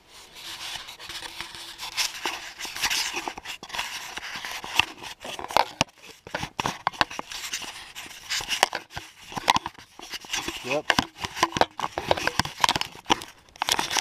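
Close-up handling noise from the camera being jostled against clothing: continuous rustling and crinkling broken by many sharp clicks and knocks.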